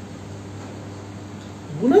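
Steady low hum with faint background noise, then a man's voice starts speaking near the end.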